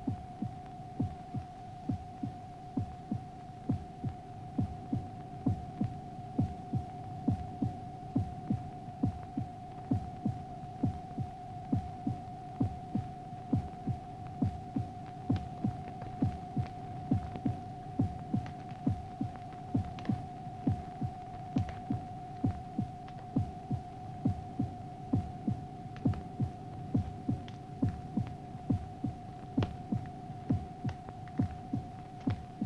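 Electronic film sound effect: a steady two-note hum with a regular low throb about twice a second, like a heartbeat.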